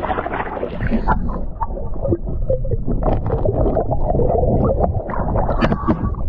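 Water sloshing and gurgling right against the microphone of a camera held at the waterline, with a steady low rumble and many small splashes and clicks.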